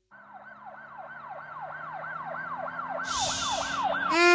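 An emergency-vehicle siren, its pitch swinging up and down about three times a second, growing steadily louder over a low steady hum. A short burst of high hiss comes near the end.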